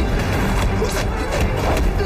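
Action-film fight score with a heavy low beat, over added sound effects of hand strikes and swishes in a hand-to-hand kung fu exchange.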